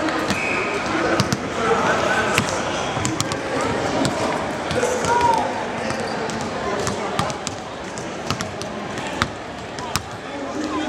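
Several basketballs bouncing on an indoor court floor as players dribble and shoot, making many sharp, irregular thuds that overlap one another, over a background of voices.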